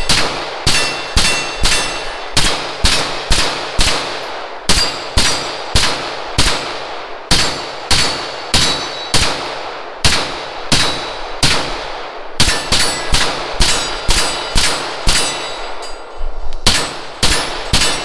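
CZ Scorpion 9mm carbine fired as a long string of single shots in quick succession, about two a second, with two short pauses.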